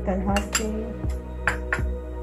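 Metal spoon clinking against a small glass bowl of ketchup-like red sauce as it is served out, about five short clinks.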